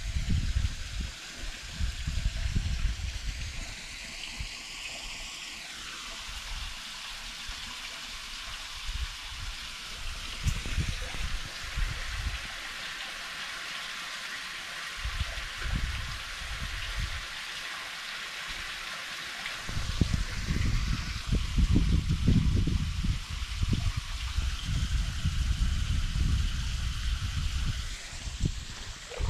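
Shallow ditch water running and trickling over stones, a steady rush. Irregular low rumbles and knocks come in near the start and again from about twenty seconds in.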